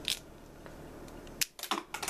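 Hard plastic toy parts clicking as they are handled: one click at the start, then a quick run of clicks shortly before the two-second mark.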